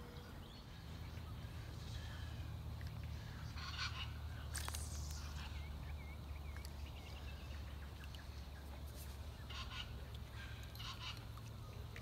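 Waterfowl calling a few short, honk-like times, faint against a low steady rumble, with light bird chirping in between.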